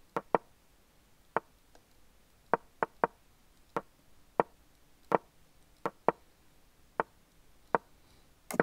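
Chess move sound effects from an online chess site: about a dozen short, sharp wooden clicks, one for each piece moved, coming in quick, irregular succession as the moves are made at bullet speed.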